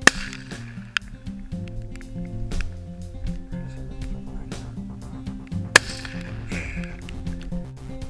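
Two rifle shots from a scoped bolt-action hunting rifle, about six seconds apart: each a single sharp crack with a short echo. Background music plays throughout.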